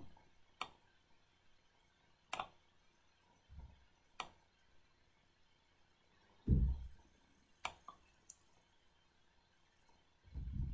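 Computer mouse clicking a handful of times, single sharp clicks a second or two apart, as the clone brush is alt-clicked and dabbed on. A low thump about six and a half seconds in is the loudest sound, with a fainter one a little before it.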